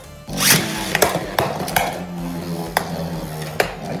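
Beyblade Burst spinning tops in a plastic stadium: a new top is launched in with a burst of noise about half a second in, then several sharp clacks as the tops strike each other and the stadium wall over a steady spinning hum.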